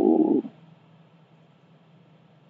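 A man's voice trailing off on a drawn-out syllable in the first half-second, then faint room tone with a low steady hum.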